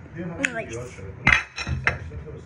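Two clattering knocks of kitchenware about half a second apart, a little past the middle, the first one louder.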